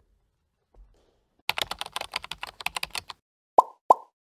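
Scattered, brief applause from a few people in a parliament chamber: a quick irregular run of sharp claps lasting about a second and a half. Near the end come two short, sharp pops with a brief ringing tone.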